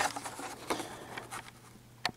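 Plastic blister pack and card of a carded toy car crackling as it is handled: a quick run of small clicks that thins out in the last half second.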